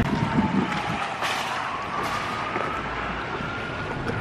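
Outdoor traffic noise with wind on the microphone, and a faint siren gliding slowly down and then up in pitch.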